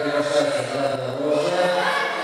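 A man's voice in one long, drawn-out call held on a steady pitch, stepping up slightly near the end.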